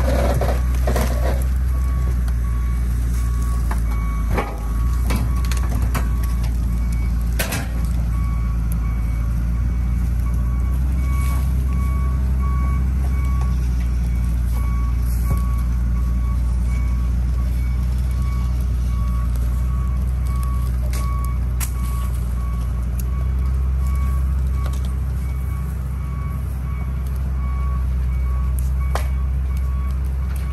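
Wheel loader's diesel engine running steadily under load while its reversing alarm beeps over and over, as it drags a car backwards out through brush. Scattered sharp cracks and snaps, most of them in the first eight seconds.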